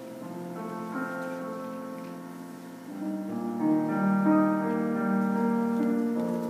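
Grand piano playing a slow passage of sustained chords and single notes. It swells noticeably louder about three and a half seconds in.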